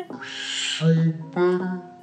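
A woman's voice drawing out the word "suave" in an exaggerated way: a long hissing "s" about half a second in length, then a low, hooting "oo" held for about a second. Faint guitar music plays underneath.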